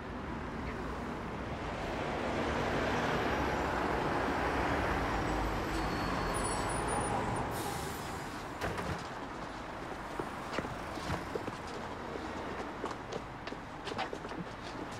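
City bus pulling in to a stop: its running noise swells and then fades, with a short air hiss about seven and a half seconds in as it halts. Scattered light taps follow.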